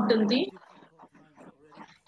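A person speaking for the first half second, then a pause of near silence.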